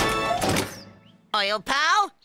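Cartoon background music cut off by a single thunk at the start, then a short silence and a cartoon character's voice exclaiming near the end.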